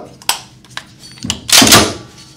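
A few small metallic clicks, then a louder, longer metal clatter about 1.3 seconds in: the upper receiver of a prototype Bond Arms lever-action rifle being swung closed onto the lower during reassembly.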